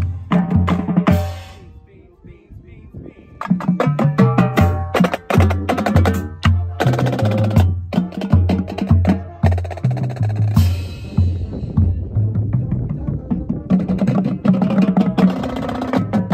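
Marching drumline playing: Ludwig tenor drums with a run of tuned bass drum notes stepping in pitch underneath, and cymbals. The playing stops about a second and a half in and comes back in about three and a half seconds in, and a cymbal crash rings out about ten and a half seconds in.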